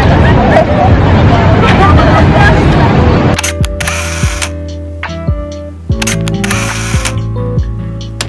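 Group of people chattering together for about three seconds, then an abrupt change to background music with a steady drum beat and a few sharp clicks.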